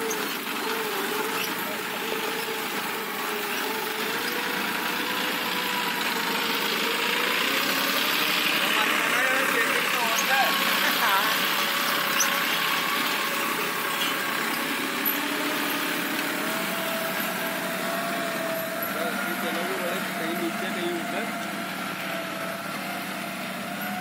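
John Deere 5050 D tractor's three-cylinder diesel engine running steadily under load as it pulls a chisel plough through the soil, its note drifting slightly in pitch.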